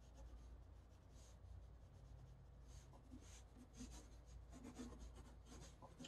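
Pencil sketching on paper: faint, scratchy short strokes, coming quicker and closer together from about halfway through.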